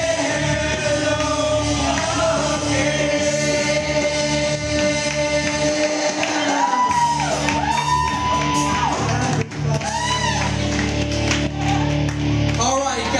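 A man singing into a microphone over loud backing music through a PA, holding one long note for several seconds, then a run of notes that rise and fall.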